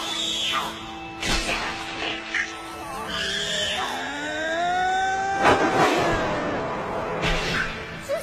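Dramatic background score with several heavy impact hits, about a second in, midway and near the end, and a long pitched cry that rises and then falls in the middle.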